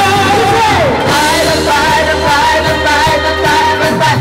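Several singers performing a Cantonese pop song into microphones over amplified band music, with drums and bass under long held sung notes and a downward vocal slide about a second in.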